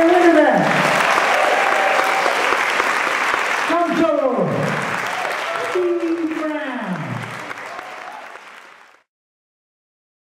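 Audience applauding, with voices calling out over it in long falling-pitched shouts. The sound fades out and stops about nine seconds in.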